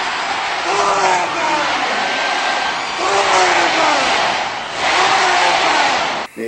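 A rock song on a lo-fi film soundtrack: a male singer's long phrases falling in pitch about every two seconds over a dense, hissy band backing.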